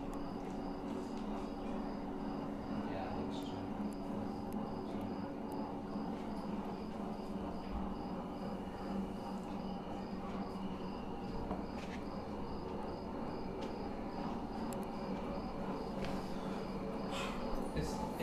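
Steady room ambience: a low hum with a faint, evenly repeating high chirp like an insect's, and a few soft clicks and knocks.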